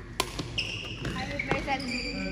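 Badminton racket striking the shuttlecock with a sharp crack just after the start, then a couple of lighter hits about a second later, with shoes squeaking on the court floor between them.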